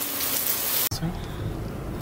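Food sizzling in a frying pan, a steady hiss that cuts off suddenly about a second in, giving way to the low, steady rumble inside a van's cabin.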